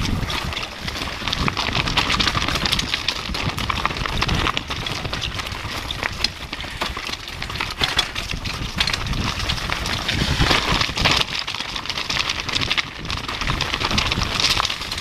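Downhill mountain bike rattling over a rocky trail at speed, picked up by a GoPro on the bike or rider: a continuous clatter of tyres, chain and frame knocking on rocks, with a heavier burst of impacts about ten seconds in.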